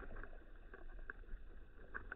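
Faint, muffled underwater pond ambience picked up by a submerged camera: a steady low rumble with scattered small clicks and crackles.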